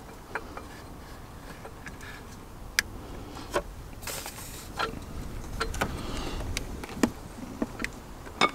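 Scattered sharp clicks and knocks of metal parts as a short shifter component is worked down onto the gear-selector shaft, with a brief hiss about four seconds in.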